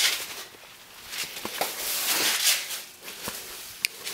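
Handling and movement noise from a handheld camera being carried: a hissy rustling that swells and fades, with a few light taps.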